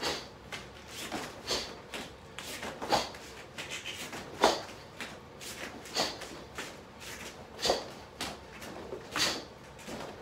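Karate kicks thrown one after another: a short sharp swish of the uniform and a forceful breath with each kick, about one every one and a half seconds, with bare feet shuffling and landing on the foam mat.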